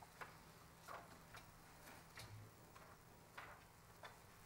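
Near silence: room tone broken by faint, irregular clicks, about one every half second.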